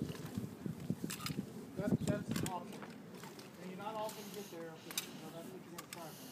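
People talking, with a few brief sharp clicks between the words.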